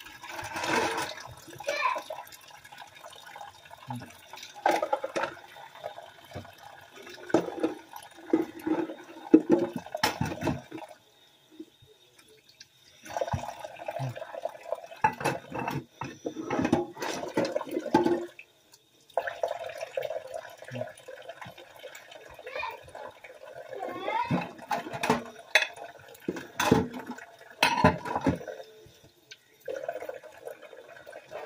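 Water running into a kitchen sink while dishes are washed by hand, with repeated clinks and knocks of dishes against each other and the sink. The water stops briefly twice, for about two seconds near the middle and again for a moment a little later.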